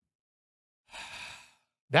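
A man's single breathy sigh, a soft exhale lasting under a second, about a second in.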